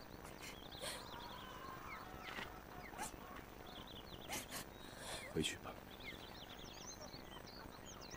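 Faint outdoor ambience of small birds chirping again and again, with a few light clicks. A brief, low, pitched sound about five and a half seconds in is the loudest moment.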